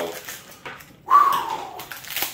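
Scissors snipping into a foil blind-bag packet, with crinkling and rustling of the foil. About a second in, a short falling vocal sound from a man, the loudest sound here.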